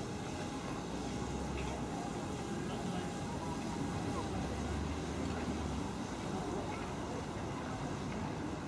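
Steady outdoor background noise with a low rumble that swells twice, about a second in and again around the middle.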